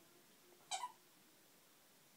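A squeaky plush toy squeaks once, briefly and high-pitched, about three quarters of a second in, as a dog bites down on it.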